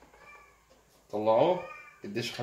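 A cat meowing faintly, then a man's drawn-out voice, loud, starting about a second in.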